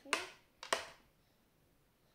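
Two short, sharp clicks about half a second apart, near the start, from a spoon and knife working raw pumpkin flesh and seeds on a serving tray.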